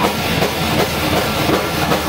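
Live rock band playing loudly, the drum kit keeping a steady driving rhythm under the rest of the band.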